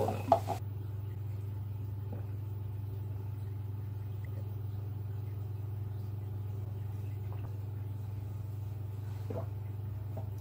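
A steady low hum throughout, with a sharp knock just after the start and a few faint taps later on.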